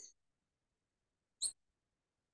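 Reed pen (qalam) scratching on paper while writing Naskh script: the end of one stroke right at the start, then one short, sharp scratch about a second and a half in.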